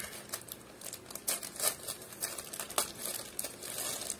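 Packaging crinkling irregularly as it is handled and opened, with scattered short crackles.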